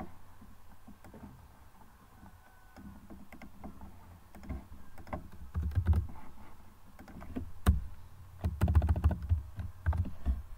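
Computer keyboard typing in irregular bursts of key clicks with soft desk thuds. It is sparse at first and heaviest in the second half.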